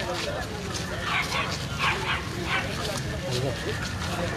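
A dog barking a few short times in the middle, over the steady chatter and footsteps of a crowd walking along a street.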